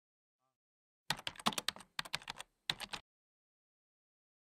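A quick run of sharp clicks, about fifteen in two seconds, with a brief pause before the last few; they stop about three seconds in.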